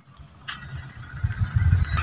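Irregular low rumble and thumps of a handheld phone being carried on the move, with wind and handling noise on its microphone, after a single click about half a second in.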